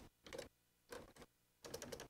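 Faint computer keyboard typing: a few scattered key clicks, then a quicker run of keystrokes near the end.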